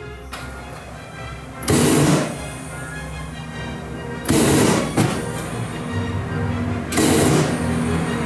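Homemade gas flamethrower firing three short bursts of rushing flame, each about half a second and evenly spaced, over background music.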